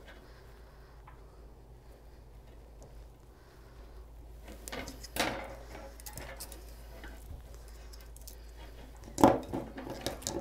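Paddle wire being wound from its spool around a metal wire wreath form: faint metallic clinks, rattles and scrapes, with a louder clatter about five seconds in and a sharp knock shortly before the end.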